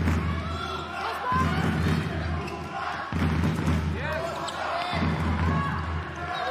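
Handball game sound in an indoor hall: a ball bouncing, short shoe squeaks on the court and voices, over a low pulsing drumming from the stands that comes in blocks of about a second and a half.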